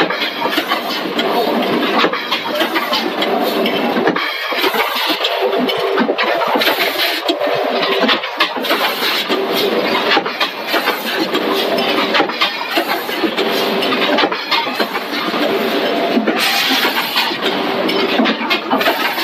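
Rotary premade pouch packing machine running: a dense mechanical clatter of rapid clicks with steady humming tones underneath, and a spell of hiss near the end.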